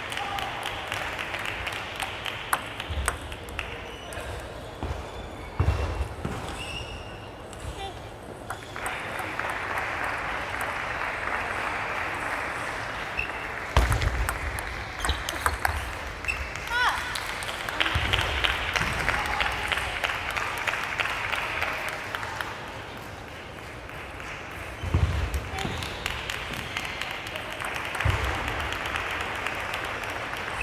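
Table tennis rallies: the ball clicks off the paddles and the table in quick strokes, with occasional low thumps, and clapping and shouted voices between points.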